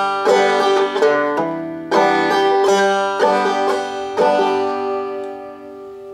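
Five-string banjo in open G tuning played clawhammer style: a quick phrase of plucked notes, the last one left ringing and fading out.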